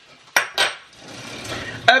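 Metal cutlery clinking as a spoon is fetched: a sharp clink about a third of a second in, a rattling in the middle, and the loudest clink near the end.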